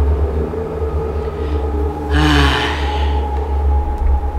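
A deep, steady rumbling drone with a few held tones underneath, and a person's loud breathy sigh falling in pitch a little past the middle.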